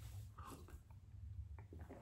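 Faint sipping and swallowing from a ceramic mug, with a few small clicks in the second half.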